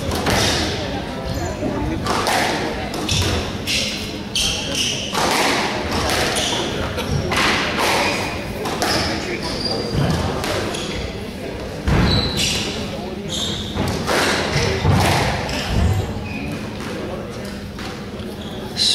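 Squash rally: rackets striking the ball and the ball hitting the walls in a run of sharp knocks every second or so, with brief high squeaks of court shoes on the wooden floor.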